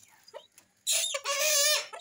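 Purple swamphen calling once from the cage, a loud call starting about a second in and lasting about a second.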